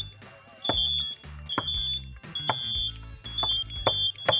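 Several small battery buzzers, keyed by clothes-peg switches, beep Morse code SOS together, slightly out of step: a high, steady electronic tone sounds as three longer beeps, then a quick run of short beeps near the end.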